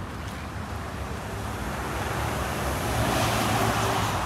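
A road vehicle passing on the street, its noise swelling to a peak near the end, over steady outdoor traffic hum.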